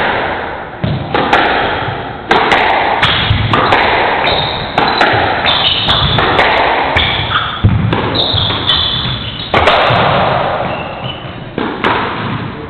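Squash rally in a reverberant court: repeated sharp smacks of the ball off racket strings and the walls, with short high squeaks of court shoes on the wooden floor between shots.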